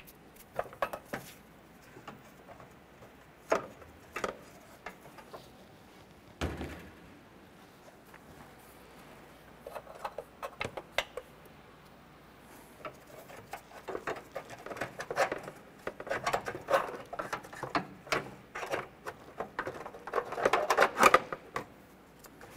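Scattered clicks and metallic clinks of a ratchet and socket undoing the battery hold-down nuts, and of the steel bracket and J-hook rods being lifted out. The clinking comes thicker and faster in the second half.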